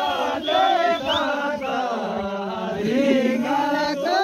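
A group of men singing a Kinnauri folk song together without instruments, their voices drawn out and sliding in pitch.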